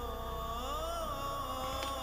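Soft background music score: several held notes sound together, with one melodic line gliding slowly up and back down about halfway through.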